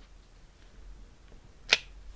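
Faint handling of a clear plastic sheet of tiny glue dots, with one sharp click near the end as a glue dot is pulled off the sheet.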